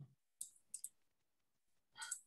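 A few faint computer mouse clicks in the first second, the last two close together, over near silence.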